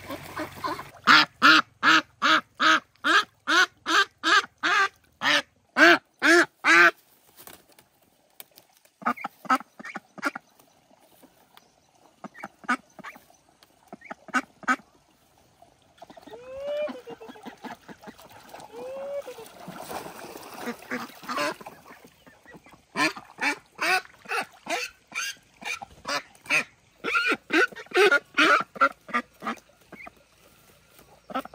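Ducks quacking in loud runs of short quacks, two or three a second, with sparser calls in between and two longer drawn-out calls in the middle.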